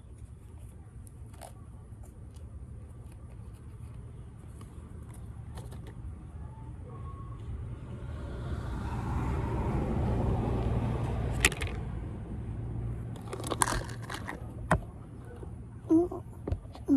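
A car passing by: its noise swells over a few seconds and fades again, over a steady low rumble. A few sharp clicks and taps come near the end.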